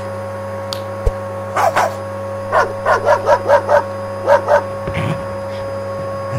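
Cartoon pug yapping: two short yaps, then a quick run of about six at roughly five a second, then two more, over a steady hum.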